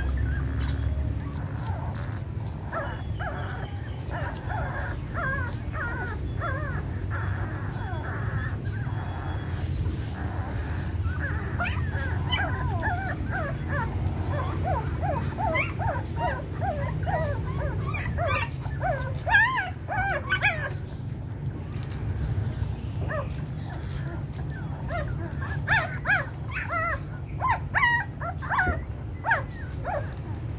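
A litter of nursing puppies squeaking and whimpering in many short, high cries that come thickest around the middle and again near the end, over a steady low rumble.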